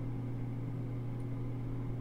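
Steady low hum with no change and no other sound.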